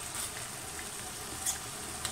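Thick coconut-milk and dendê-oil sauce simmering in a steel wok, a faint steady sizzle and bubbling, with one light click about one and a half seconds in.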